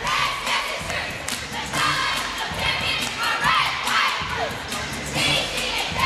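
Crowd cheering and shouting, with high whoops and screams rising and falling throughout, in support of a competitive cheerleading routine.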